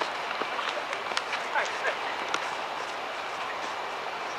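Futsal play on an outdoor artificial-turf court: a steady background hiss broken by scattered sharp ball kicks and footfalls, with faint distant shouts from players.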